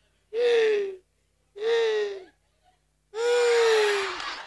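A man's high-pitched, squealing laughter: three long, slightly falling squeals about a second and a half apart, each drawn out on a breath.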